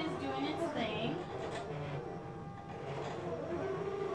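An indistinct voice in the background with no clear words, most marked in the first second and again near the end, with a lull in between.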